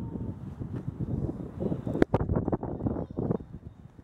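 Wind buffeting the camera's microphone as an uneven rumble, with one sharp knock about halfway through.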